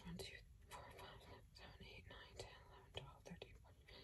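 A woman whispering faintly under her breath as she counts pencils one by one.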